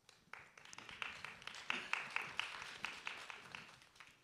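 Brief audience applause in a theatre: many hands clapping, swelling up and then dying away within about three seconds, fainter than the speech around it.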